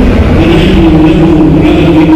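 A loud voice chanting in long, held notes that slowly shift in pitch.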